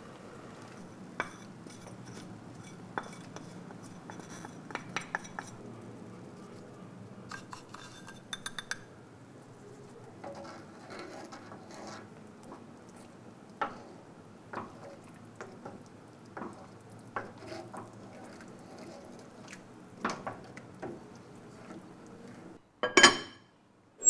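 Kitchen utensils and dishes clinking and knocking now and then over a steady low hum, with one loud clatter near the end.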